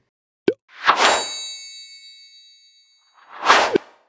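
Edited transition sound effects: a short click, then a whoosh with a bright metallic ring that fades away over about two seconds, and a second whoosh that swells and cuts off just before the end.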